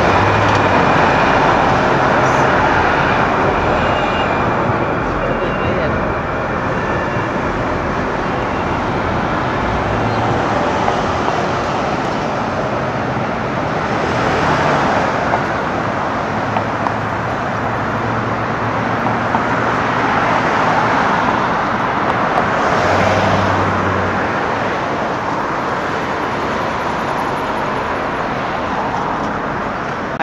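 Street traffic on a downtown road: a steady wash of tyre and engine noise from passing cars and trucks, swelling as a few vehicles go by in the middle.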